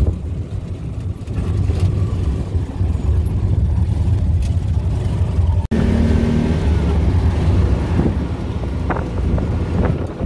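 Three-wheeled auto rickshaw's small engine running as it drives, with road noise, heard from inside the open passenger cabin: a steady low drone that breaks off briefly a little past halfway.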